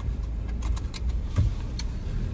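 Car cabin rumble as the car pulls off at low speed, with a few light clicks and a knock about a second and a half in.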